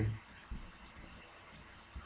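Two faint clicks of a computer mouse, one about half a second in and one near the end.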